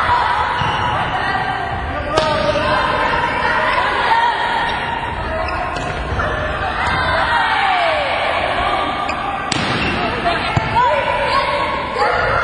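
Volleyballs being struck during live play, with two sharp slaps of ball contact, one about two seconds in and one near the end, over the steady calling and chatter of players' voices.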